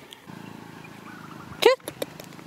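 A dog barks once, a single sharp bark about a second and a half in, over a low steady hum.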